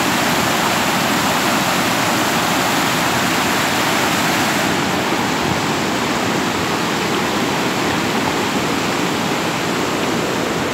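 Muddy floodwater of a swollen creek rushing across a paved road and tumbling off its edge in rapids: a loud, steady rushing of water. The creek is in flood and overtopping the road.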